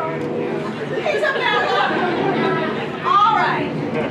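Voices talking, indistinct and overlapping, with a louder stretch about three seconds in.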